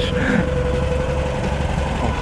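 Early Citroën 2CV's air-cooled flat-twin engine idling steadily, with a constant low rumble.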